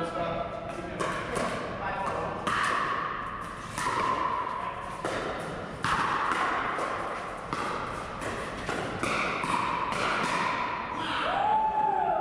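Pickleball paddles striking a hard plastic ball in a rally: a string of sharp pocks, roughly one a second, each ringing out in a large echoing hall.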